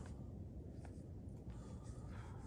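Faint outdoor ambience: a low, steady wind rumble on the microphone, with a couple of faint scuffs, one under a second in and one near the end.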